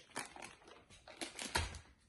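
Faint crinkling and rustling of a plastic bag of dried split fava beans being handled, with a soft bump about a second and a half in as it is set down on the counter.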